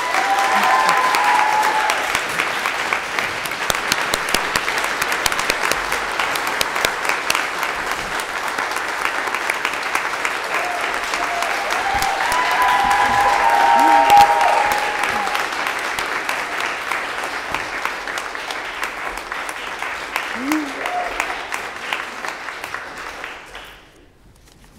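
A crowd applauding, with cheering voices just after it starts and again around the middle, where it is loudest; the clapping dies away near the end.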